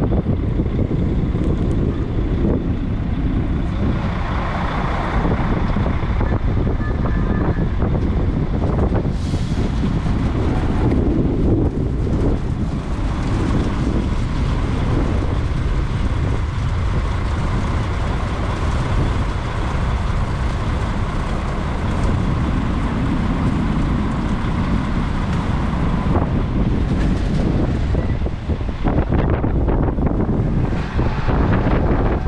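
Engine of a truck-mounted crane running steadily while it hoists and lowers a net bag of herring, with wind buffeting the microphone.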